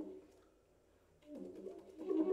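Alto saxophone in a quiet passage: a falling phrase dies away at the start, a brief pause follows, and then soft low notes come in about a second and a half in.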